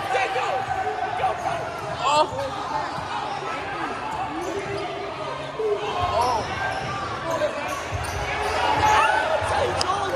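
Basketball being dribbled on a hardwood gym floor, the bounces thudding repeatedly, under the constant chatter and shouts of a courtside crowd echoing in a large gym.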